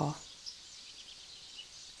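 Quiet outdoor background noise, a low even hiss, with a few faint, high bird chirps.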